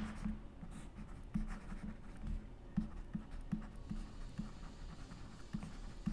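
Stylus writing on a pen tablet: a series of short, faint, irregular strokes and taps as a few words are written by hand.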